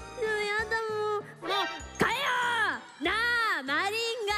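A woman speaking in an exaggerated high, sing-song voice, with long swooping rises and falls of pitch from about two seconds in. Under it is light background music with a steady bass beat.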